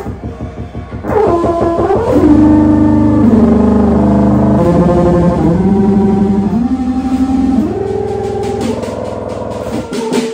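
Free improvisation by a trio of mechanized instruments, soprano saxophone and drums: loud held tones that swoop down from high about a second in, then step between notes, over rapid clicking at the start and again near the end.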